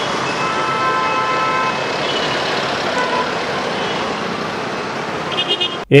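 Road traffic noise, with a vehicle horn sounding for about a second and a half near the start and shorter horn toots later, cutting off suddenly at the end.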